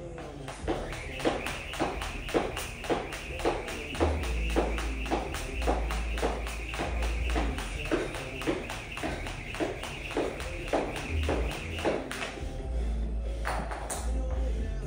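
Cable jump rope slapping a rubber floor about two and a half times a second, with a steady whir from the spinning rope. It stops about twelve seconds in. A song with heavy bass plays underneath.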